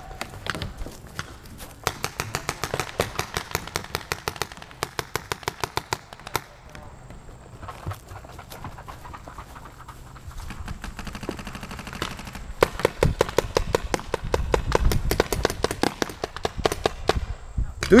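Paintball markers firing in rapid strings of sharp pops, several shots a second. There are two long stretches of fire with a lull between them.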